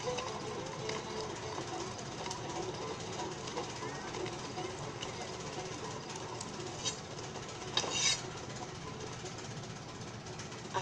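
Film soundtrack playing from a television and picked up by a phone: a steady hiss with a faint low murmur and a few sharp clicks in the second half, the loudest about eight seconds in.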